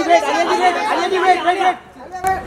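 Several men shouting the same short call over and over, overlapping, cutting off about a second and a half in.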